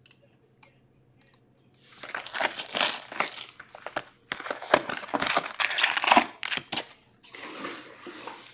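Plastic shrink wrap and foil card packs crinkling as a hobby box of hockey cards is unwrapped and opened and its packs are pulled out, starting about two seconds in.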